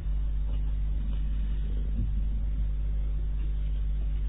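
Steady low hum and room noise in a lecture recording during a pause in speech.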